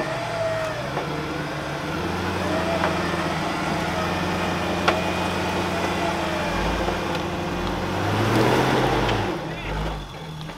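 Land Rover Discovery's V8 engine running as the truck crawls up a steep, rutted dirt track. Its revs swell up and back down about eight seconds in, with a single sharp click about five seconds in.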